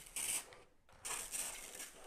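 Hand-pump pressure sprayer misting water in two hissing spurts, a short one and then a longer one of about a second.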